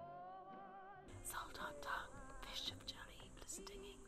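Soft music of held, slowly sliding voice-like tones. About a second in, a whispering voice comes in over it.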